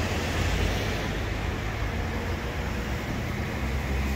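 Steady street traffic noise with a low rumble, with no separate events standing out.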